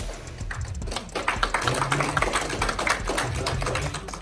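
Audience applauding: a dense patter of hand claps that swells about a second in.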